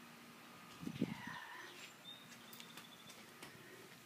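Faint outdoor ambience with a few faint, brief high chirps from distant birds.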